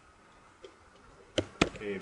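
Two sharp clicks of computer keyboard keys about a quarter of a second apart, about a second and a half in, then a man's voice begins speaking.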